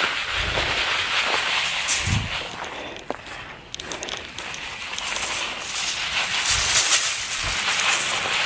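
Insecticide granules pouring and sprinkling from a tipped plastic bag, a crackly, rustling hiss that eases off for a moment midway, with a few low bumps from handling the bag.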